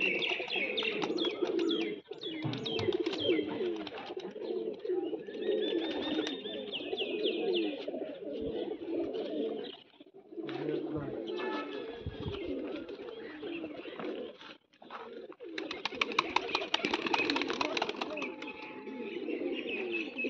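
A flock of domestic pigeons cooing continuously, many overlapping low coos. Near the end comes a spell of quick fluttering clatter, like wings beating as birds take off.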